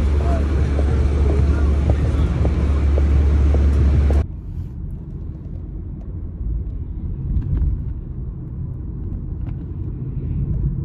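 City street noise with wind buffeting the microphone, a heavy low rumble, and faint ticks of footsteps on the pavement. About four seconds in it cuts abruptly to the quieter low rumble of a moving car's cabin, with a few light clicks.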